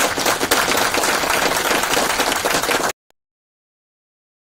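Audience applauding, a dense clatter of many hands clapping that cuts off abruptly about three seconds in.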